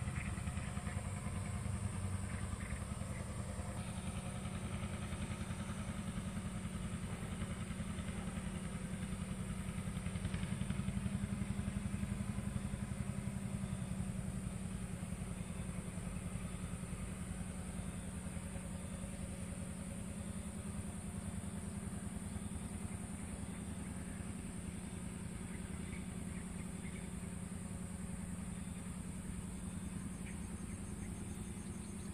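A small engine running steadily at low revs: a low, pulsing drone that swells slightly partway through and eases off later.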